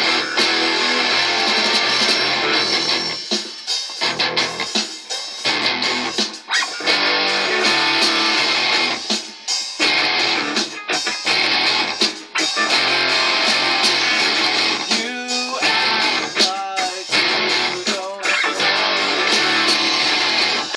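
Loud band music played through studio control-room monitors, with an electric bass being played along with it for a recording take. Sharp hits run through the track.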